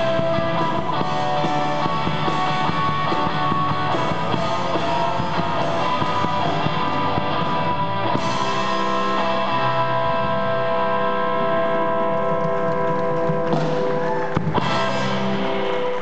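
A live rock band playing: electric guitars over bass and drum kit, with sustained guitar notes ringing through.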